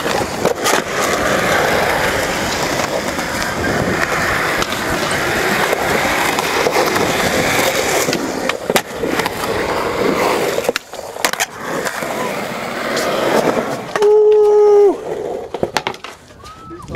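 Skateboard wheels rolling on concrete, broken by sharp clacks of boards popping and landing. Near the end comes a steady held tone about a second long, which dips in pitch as it stops.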